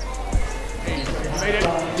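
A basketball bouncing on an indoor court, a few short thumps, heard under background music and faint voices.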